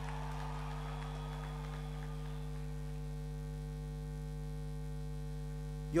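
Steady electrical mains hum, a low buzz made of several fixed tones that does not change. A man's voice starts just at the end.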